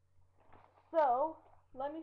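A woman's voice: one drawn-out vocal sound with a dipping pitch about a second in, and speech starting near the end, over a low steady hum.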